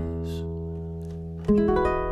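Nylon-string classical guitar playing the closing chords of a song: a chord rings and slowly fades, then about a second and a half in a final chord is rolled across the strings, the loudest moment, and left ringing.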